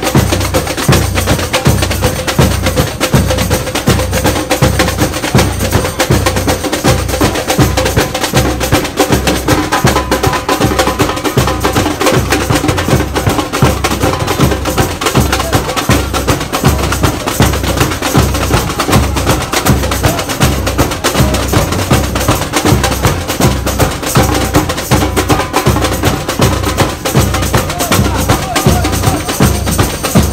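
Brazilian street percussion group drumming, with a steady deep bass-drum pulse about twice a second and busy stick strokes on smaller drums over it.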